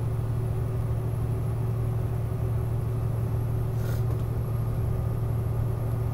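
Steady in-cabin drone of a vehicle cruising at highway speed: engine and road noise with a constant low hum.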